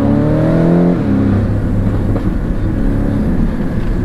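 Porsche 718 Cayman engine heard from inside the cabin, its pitch rising under acceleration and then dropping sharply about a second in as the gearbox shifts up, before pulling on at lower revs. Road noise runs beneath it.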